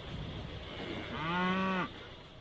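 A dairy cow mooing once, a short low moo of under a second in the second half.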